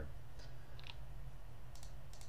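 A few faint clicks from a computer mouse and keyboard being worked, over a low steady hum.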